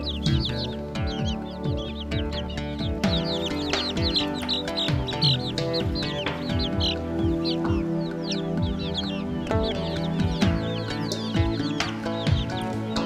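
Young chicks peeping again and again in short, falling cheeps over background music.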